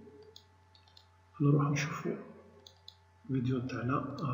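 A few faint computer mouse clicks, short and sharp, in the gaps between stretches of a man talking.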